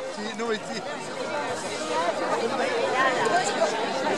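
People talking and chattering, voices overlapping, with no other sound standing out.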